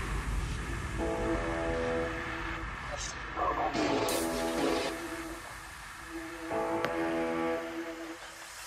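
Background electronic music with held synth chords that drop out briefly around the middle, where a short wavering phrase plays.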